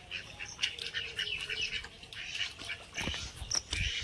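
Ducks quacking repeatedly, with a couple of low thumps near the end.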